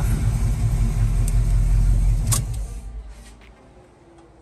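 1971 Buick Skylark's 350 V8 idling, heard from inside the cabin, then switched off. A sharp click comes a little past halfway, and the engine runs down and dies within about a second.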